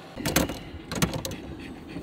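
Several sharp clicks and clunks from the controls on a pickup truck's steering column, in two clusters about a third of a second and a second in, over the low, steady sound of the truck's engine.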